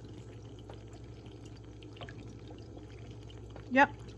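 Steady running water of an aquarium over a low hum, with a couple of faint ticks about one and two seconds in.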